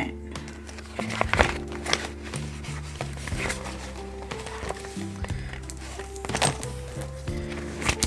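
Soft background music of steady held notes, with scattered clicks and rustles of plastic binder pockets being turned, the loudest about a second in and again past six seconds.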